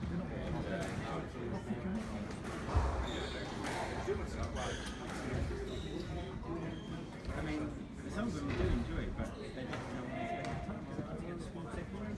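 A squash ball bouncing and being struck by rackets against the walls during a short rally, as sharp knocks with the strongest about three seconds in. Voices can be heard in the background.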